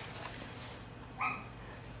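A month-old Spanish water dog puppy gives one brief, high-pitched cry about a second in.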